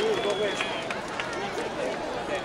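Crowd chatter: many voices talking and calling out at once, with none clear enough to make out.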